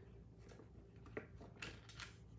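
Near silence with two faint, brief rustles of a sheet of patterned paper being handled and turned over, a little over a second in.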